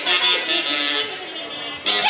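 Live huaylarsh music from a band led by reed wind instruments, playing a bright, sustained melody, with a louder phrase breaking in near the end.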